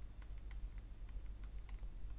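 Faint, scattered light ticks of a stylus tapping and stroking on a tablet while handwriting, over a low steady hum.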